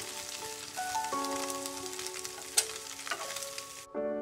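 Winged beans and scrambled egg sizzling in a frying pan as they are stir-fried, with a sharp click about two and a half seconds in. The sizzling cuts off suddenly just before the end.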